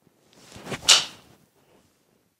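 A full golf swing: the club's swish builds for about half a second into one sharp crack as the clubhead strikes the ball, a really good strike, then fades quickly.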